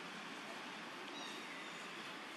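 A faint, brief high-pitched mewing call from a young macaque about a second in, over a steady outdoor background hiss.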